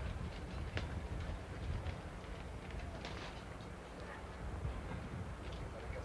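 Hushed outdoor ambience while a golfer addresses a bunker shot, over the steady low hum and hiss of old broadcast audio. There is a single small click about three-quarters of a second in and a faint brief sound about three seconds in.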